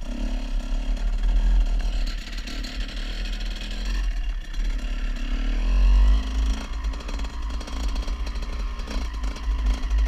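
Suzuki RM125 two-stroke dirt bike engine running under way, its pitch rising and falling with the throttle and peaking about six seconds in, with wind noise on the helmet-mounted microphone.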